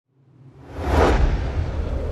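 Whoosh sound effect with a deep low rumble for a logo reveal, swelling up from silence and peaking about a second in.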